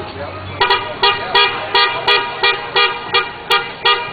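A horn tooting a quick series of short blasts of even pitch, about three a second, starting a little over half a second in.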